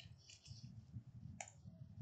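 Faint clicks of a computer keyboard and mouse over a low rumble, with one sharper click about one and a half seconds in.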